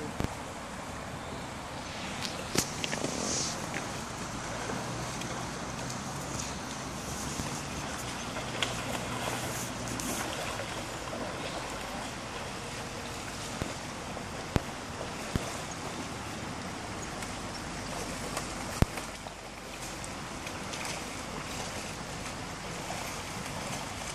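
Shallow river running over a stony riffle, a steady rushing noise, with a few sharp clicks scattered through it.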